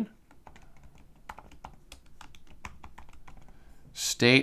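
Computer keyboard typing: a quick, irregular run of keystrokes as a name is typed in, fairly faint.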